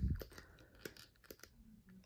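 A few faint, scattered clicks and creaks of hands flexing the plastic joints of an action figure's arm.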